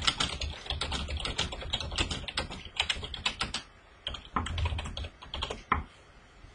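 Typing on a computer keyboard: a quick run of key clicks, a short break a little past halfway, then a second run ending in one sharper click.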